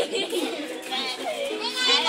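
Several children's voices chattering in a short break between songs.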